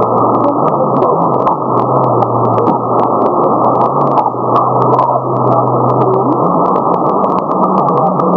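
Shortwave radio receiver audio tuned near 6180 kHz: a dense, steady band of hiss with frequent sharp static crackles, and a low steady tone that steps up in pitch near the end.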